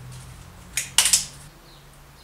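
Steel tape measure being handled and its blade pulled out: a few short, sharp metallic clicks and rattles about a second in.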